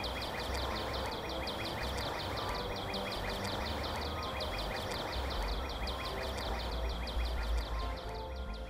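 A calling insect chirping steadily outdoors, a rapid even train of high chirps at about six a second, over a low background rumble.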